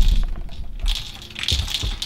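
Sharp cracks, knocks and low thumps from quick movement and handling at an ice-fishing hole, with a louder cluster of clicks and knocks about one and a half seconds in.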